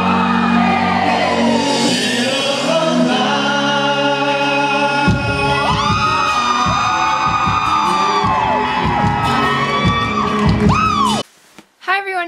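A man singing live into a microphone over music in a large hall, with whoops and shouts from the crowd in the second half. The sound cuts off abruptly about a second before the end.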